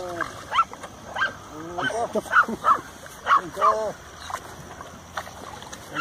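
Dogs barking: a series of short, sharp barks from about half a second in, dying away after about four seconds.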